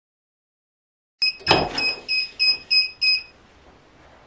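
Heat press timer beeping a rapid run of about seven high electronic beeps, about three a second, signalling that the 15-second press time is up. A thud near the start of the beeping as the clamshell press is released and swings open.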